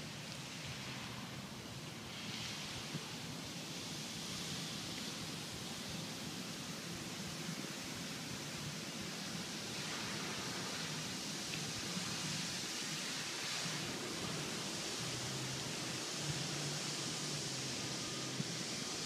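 Steady outdoor background hiss with a faint low hum underneath and no distinct events.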